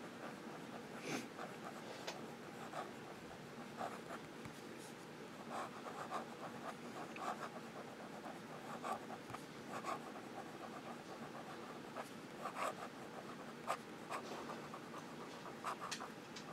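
Noodler's Tripletail fountain pen writing cursive on lined paper with the nib turned over (reverse writing): faint, irregular scratching of short pen strokes.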